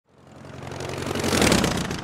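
An aircraft engine passing by: the drone swells from nothing to a peak about a second and a half in, then begins to fade.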